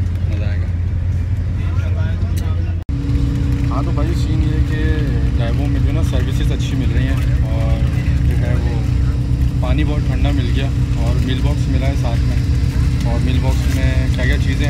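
Steady low rumble inside an air-conditioned intercity coach bus cabin, from its engine and air conditioning. About three seconds in the sound cuts briefly, and the rumble comes back fuller, with a steady hum over it and voices talking.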